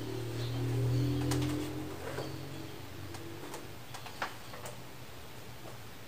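Electronic keyboard sounding a low sustained note or chord that fades away about two seconds in. Scattered light clicks and taps follow.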